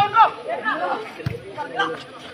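Voices shouting and calling out, with chatter in the background. The loudest calls come right at the start.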